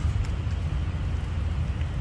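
Steady low rumble of background noise, with a faint click or two.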